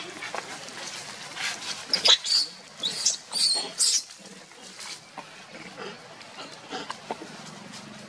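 Long-tailed macaques screaming during a brief attack and scuffle: a run of loud, shrill screams from about one and a half to four seconds in, then quieter calls and rustling.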